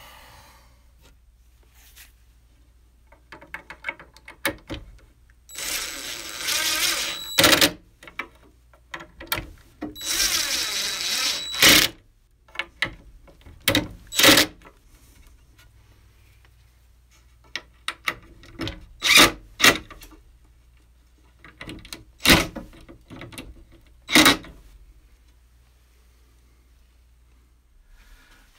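DeWalt cordless drill/driver driving pocket-hole screws into a wooden brace: two runs of about two seconds each, with a steady motor whine, about a quarter and a third of the way in. Later come several sharp knocks and short bursts as the brace is fitted and fastened.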